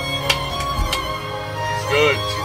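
Live band music with a violin playing the melody over held chords, with a few light percussion hits in the first second.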